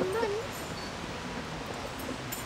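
A brief wavering, whimper-like voice in the first half second, then faint steady outdoor background noise.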